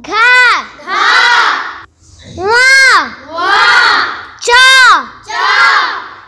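A young girl calling out Hindi consonants one by one, three letters in all, each called syllable answered straight away by a chorus of children's voices repeating it.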